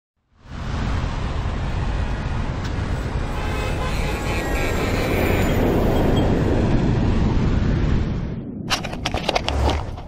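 Jet airliner flyover sound effect: a broad rushing roar with a deep rumble underneath that swells and then fades out after about eight seconds. A few sharp knocks follow near the end.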